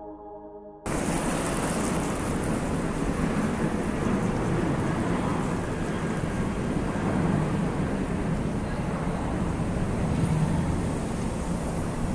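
Steady outdoor rumble of road traffic, an even rushing noise with no distinct events, starting abruptly about a second in after a faint end of music.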